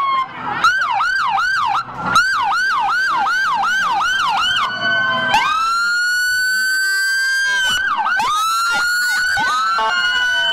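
Sirens of a procession of police cruisers and other emergency vehicles, several sounding at once. They give a rapid yelp of about three sweeps a second, change to a long rising wail about five seconds in, and go back to yelping near the end.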